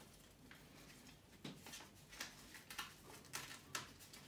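Faint, scattered crinkles and soft ticks of paper backing being torn and peeled off a strip of kinesiology tape.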